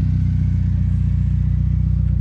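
Engine of a BMW E30 converted into a pickup, idling steadily.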